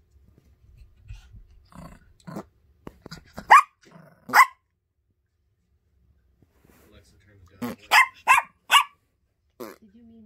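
Small Yorkshire terrier barking: two sharp barks about three and a half and four and a half seconds in, then a quick burst of three or four barks near the end, with a few softer sounds before the first bark.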